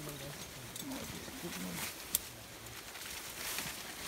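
Low, indistinct voices murmuring in short bits, over rustling of brush and rope as someone pushes through undergrowth, with one sharp click about two seconds in.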